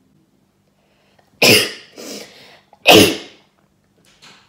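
A woman coughing hard twice, about a second and a half apart, each cough trailing off into a weaker one, set off by a covid test swab pushed up her nostril.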